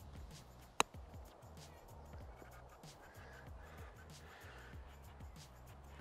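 A single sharp click about a second in: a 60-degree wedge striking a golf ball on a low pitch shot. Faint background music runs underneath.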